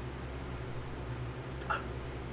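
Quiet room tone with a steady low hum, and one brief, faint breath or mouth sound from the man about one and a half seconds in, before he speaks again.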